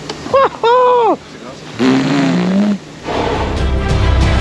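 Two brief spoken exclamations from a man's voice, then background music starts about three seconds in and carries on.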